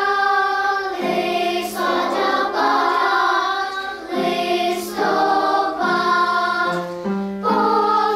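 Children's choir singing in several parts, held notes that change about once a second, with a brief dip in loudness about four seconds in.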